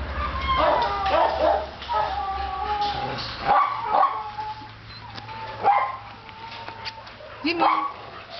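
Dogs barking and yipping in short sharp calls, with longer high whines held in between.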